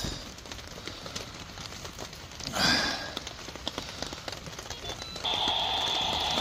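Steady rain hiss, with a short rustle about two and a half seconds in and a steady electronic buzz starting near the end.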